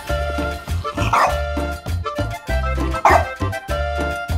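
A dog barks twice, briefly, about a second in and again about three seconds in, over background music with a steady beat.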